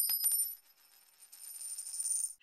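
Logo-sting sound effect: a high, metallic, chime-like shimmer with a few light ticks, fading out about half a second in. After a short silence a faint shimmer swells up near the end.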